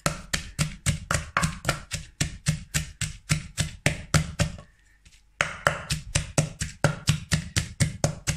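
A wooden pestle pounding chilies and garlic in an earthenware mortar, in a fast, even rhythm of about five knocks a second. The pounding stops for about a second just after the middle, then picks up again.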